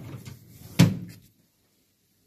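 A single sharp knock or bang a little under a second in, with a short ring-out, after some low muffled thudding.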